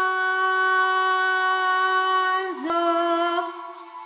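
A woman's singing voice holds one long, steady note of a pop ballad's final line. About two and a half seconds in, it breaks briefly and drops to a slightly lower note, which then fades out near the end.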